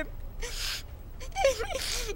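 A woman sobbing: a sharp gasping breath about half a second in, then a short wavering cry and another breath near the end.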